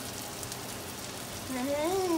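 Chicken, peppers, onions and mushrooms sizzling in a large cast iron pan, a steady even hiss. A voice comes in near the end.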